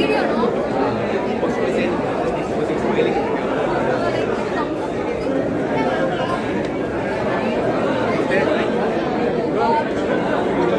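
Crowd chatter: many people talking at once, a steady babble of overlapping voices with no single speaker standing out.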